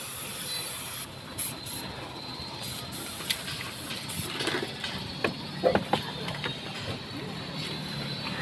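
Compressed-air hiss from a paint spray gun: steady for about the first second, then in short bursts as the trigger is worked, over steady background noise with a few light knocks.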